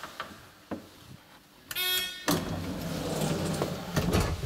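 Luth & Rosén traction elevator machinery: a few light clicks, then a short buzzing tone about two seconds in, followed at once by a steady low hum as the car sets off.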